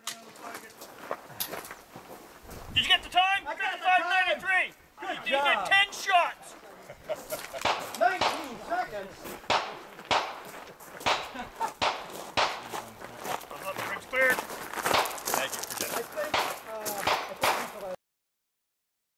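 Sharp cracks at irregular intervals, about one to two a second, typical of gunfire on a shooting range, with voices in between.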